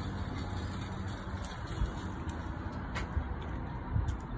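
Steady low rumble and hiss of outdoor background noise, with a few faint clicks.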